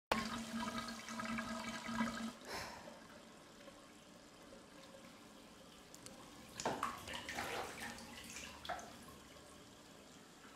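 Water running from two bathtub taps into an enamelled cast-iron tub, a rushing sound with a steady low tone over it for the first two seconds, fading to a faint hiss about three seconds in. A few short, louder handling sounds come in the second half.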